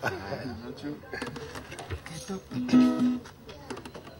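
An acoustic guitar being picked and strummed in loose, unsteady chords as the player starts into a song, with a man's voice heard briefly alongside.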